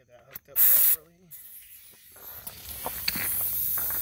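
Air-powered pneumatic grease gun triggered briefly: a short, loud hiss of compressed air lasting under half a second, about half a second in.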